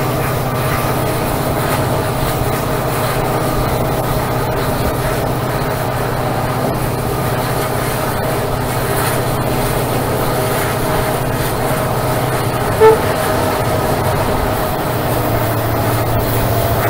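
WDP4D diesel-electric locomotive with its two-stroke EMD 16-710 V16 engine working steadily under load as the train accelerates, with wheels running on the rails. Near the end comes one very short, loud toot of the horn.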